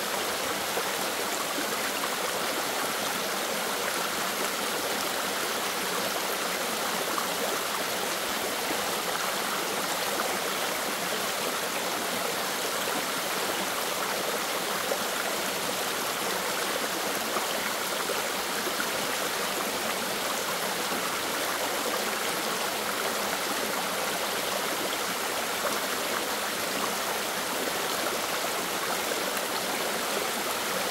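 Mountain stream pouring over a small rocky cascade, a steady, even rush of water.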